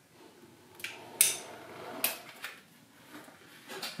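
Manual caulking gun being worked: a few sharp metal clicks about a second apart as the trigger is squeezed and the plunger rod ratchets forward on a tube of silicone caulk.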